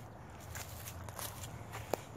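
Footsteps on grass and dirt, a run of soft irregular crunches with a sharper tick just before the end, over a low steady rumble.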